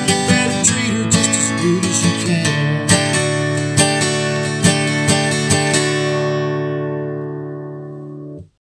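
Steel-string acoustic guitar strummed in a country rhythm. From about six seconds in, the strumming stops and the last chord is left to ring and fade.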